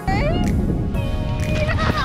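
Wind rumble on a close-up action camera's microphone as a tandem paraglider lands and skids on grass, starting suddenly and loudly. A high, sliding squeal comes at the very start, over background music.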